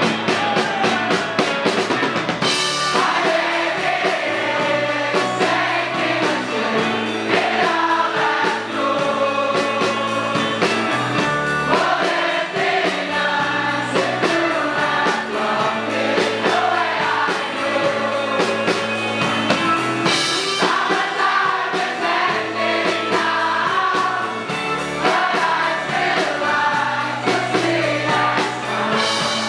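Live rock band playing a song: drum kit and electric guitar under sung vocals, with many voices singing together.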